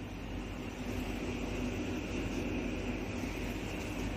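Steady low background hum and hiss with no events in it: room or ambient noise.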